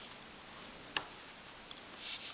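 Handling noise from crocheting with an aluminium hook and yarn: one sharp click about a second in, then two faint ticks, over a steady high hiss.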